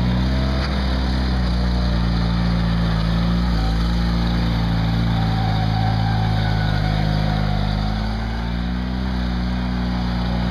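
Old loader tractor's engine running steadily as it drives and works snow, with a small shift in engine pitch about eight seconds in.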